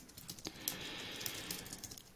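Faint typing on a computer keyboard: a few soft key clicks.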